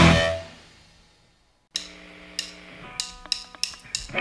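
A loud punk rock song with electric guitars and drums fades out within the first second, followed by a brief silence. At about 1.7 s the next song begins quietly, with a held low note and a few separately picked notes, before the full band comes back in right at the end.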